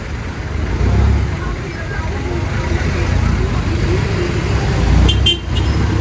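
Jeepney engines rumbling in heavy street traffic at close range, swelling about a second in and again near the end. A short, high horn toot sounds about five seconds in.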